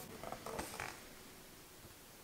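Tarot cards rubbing against each other as one card is slid off the front of the deck and moved to the back: a short rustle of card on card in the first second.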